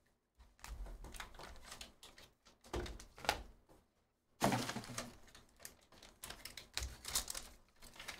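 Trading-card box and foil pack being handled on a table: scattered light clicks and knocks, then, from about four and a half seconds in, a denser stretch of crinkling as the pack's wrapper is worked open.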